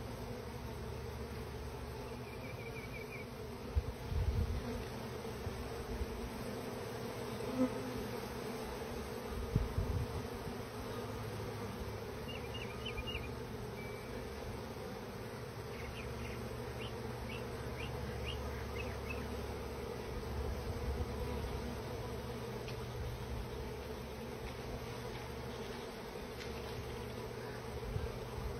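Honeybee swarm buzzing in a steady hum as the mass of bees crawls up into a hive entrance. Short high chirps come now and then, and there are two brief low thumps about four and ten seconds in.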